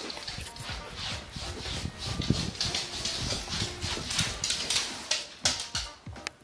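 Light, irregular tapping and rustling of movement across a hardwood floor.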